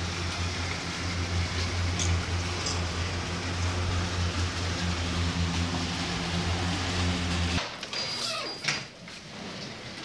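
A steady low mechanical hum, like a large motor or air-handling machinery, cuts off abruptly about seven and a half seconds in. A quieter stretch with a few light clicks and knocks follows.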